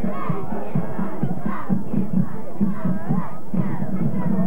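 Crowd chanting and shouting over band music with a steady beat, about four beats a second.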